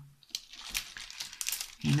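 Light, irregular clicks and crinkles from diamond-painting handwork: a wax pen picking small resin drills out of a plastic tray and pressing them onto a clear plastic canvas, with plastic film crinkling.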